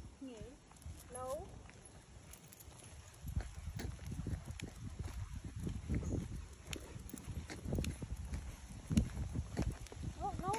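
Faint footsteps of a person walking on a paved trail: an uneven run of soft thuds, a few a second, from about three seconds in. A couple of brief faint voice sounds come in the first second or so.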